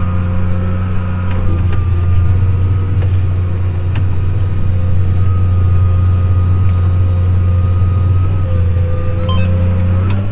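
Tractor engine running steadily while pulling a disk, heard from inside the cab: a constant low drone with a steady whine above it.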